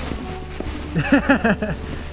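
A man laughing in four or five short bursts, starting about a second in, over a steady low hum.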